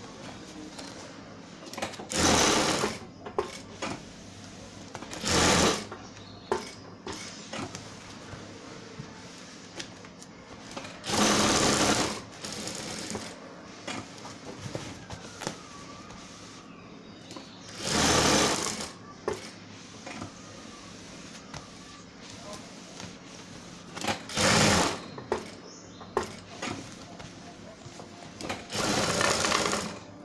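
Industrial sewing machine stitching through thick rug fabric in six short runs of about a second each, stopping for several seconds between runs while the fabric is turned and guided.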